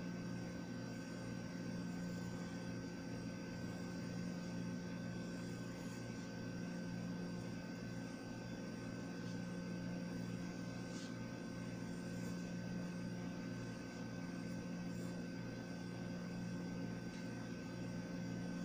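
A steady low hum with a few constant tones above it, unchanging throughout.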